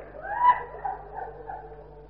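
Mourners in the audience wailing and weeping: a high rising cry about half a second in, trailing off into quieter sobbing, over a steady low hum.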